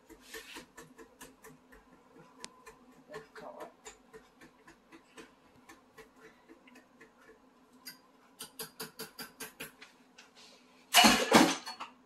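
A utensil clicking and scraping against a glass bowl as lentil batter is stirred, with a fast regular run of taps near the end. One loud knock comes about a second before the end, and a faint steady hum runs underneath.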